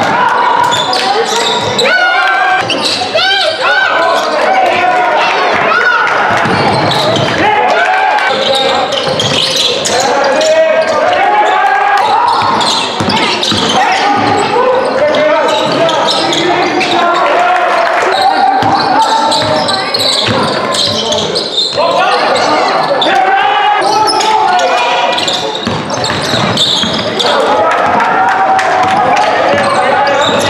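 Basketball game sound in a sports hall: the ball bouncing on the hard court floor, mixed with players' and spectators' voices calling out, all echoing in the large hall.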